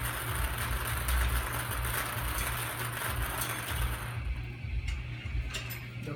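Hand-cranked wire bingo cage being turned, the numbered balls tumbling inside it; the turning stops about four seconds in, followed by a few light clicks.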